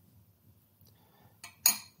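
A small metal cable lug clinking once as it is set down on a glass-topped digital scale, near the end; before that, near silence.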